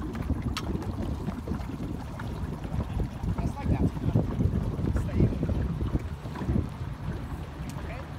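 Wind buffeting the microphone: a low, gusty rumble that rises and falls unevenly.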